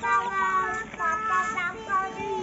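A high voice singing a tune in held, steady notes, phrase after phrase.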